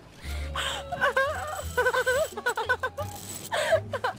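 A girl's voice crying out in a run of short, wavering cries of pain, her long hair caught in a trampoline net's zipper.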